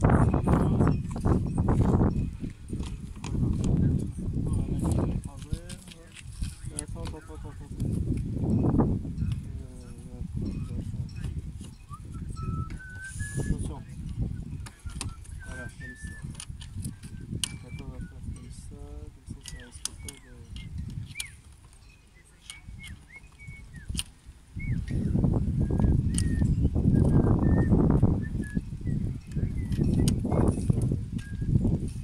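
Wind buffeting the microphone in uneven gusts, loudest at the start and again near the end, with light clicks and rattles of dinghy rigging and sail being handled. Faint short chirps come through in the calmer middle.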